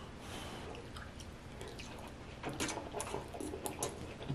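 Wet mouth sounds of eating sauce-covered king crab meat: faint at first, then soft smacking and squishy clicks from about halfway through.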